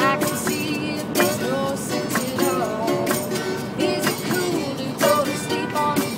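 Small acoustic band playing a mid-tempo pop-rock song: strummed acoustic guitar over a steady beat, with a melodic lead line on top.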